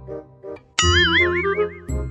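Light comedic background music, with a cartoon 'boing' spring sound effect cutting in suddenly about a second in, its pitch wobbling rapidly up and down for about a second.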